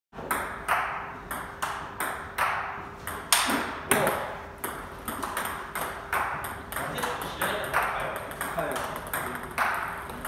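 Table tennis rally: the ball bouncing on the table and being struck by rubber paddles in a steady run of sharp clicks, about two a second, with a couple of louder hits about three and a half seconds in.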